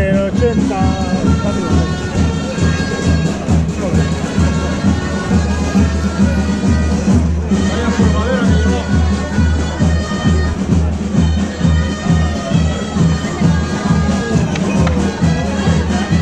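Traditional folk music from bagpipes, with a steady drone under the melody and a regular beat, along with crowd chatter.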